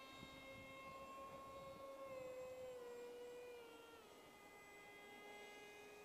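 Faint, steady whine of a foam RC park jet's brushless 2212-size 2200 Kv motor and 6x4 propeller in flight at a distance. The pitch drops a little about two to four seconds in.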